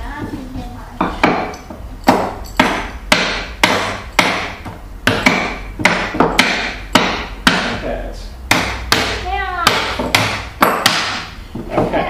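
Hammers driving nails into the wooden boards of a birdhouse kit: a steady run of sharp, uneven strikes, about two a second.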